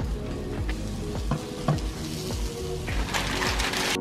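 Raw hamburger patty sizzling in a frying pan, the hiss swelling about two seconds in, over background music with a steady beat.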